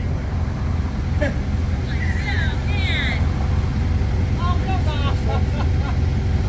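Forklift engine idling with a steady low rumble.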